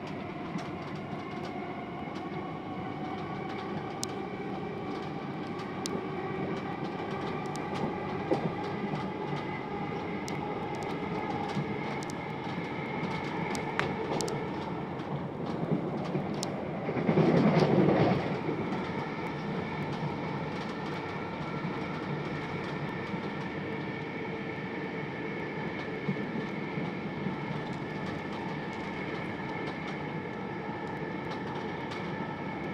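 Inside a c2c Class 357 Electrostar electric multiple unit running at speed: a steady rumble of wheels on rail, scattered clicks from the track, and several steady whining tones. A little past halfway, a brief loud rush of noise lasts about a second.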